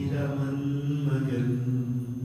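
A man's low voice chanting long, held notes in a slow mantra-like drone, the pitch shifting gently from note to note.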